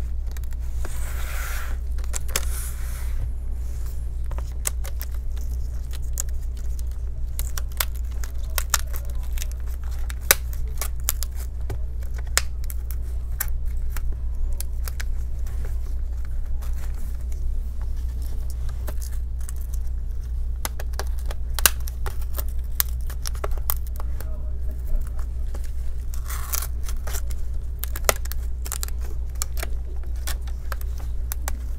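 Metal pry tool working a plastic laptop screen bezel loose from its double-sided adhesive tape: many small sharp clicks and snaps, with two brief tearing, scraping stretches near the start and near the end. A steady low hum runs underneath.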